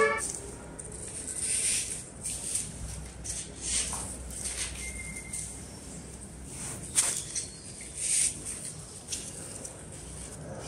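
Artificial flowers and leaves rustling as hands handle and arrange them, in irregular bursts, with one sharp click about seven seconds in.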